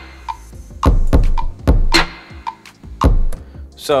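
Drum pattern of sampled kick and snare one-shots playing back from GarageBand for iPad's sampler, quantized to the grid: sharp hits with a heavy low end, about two a second.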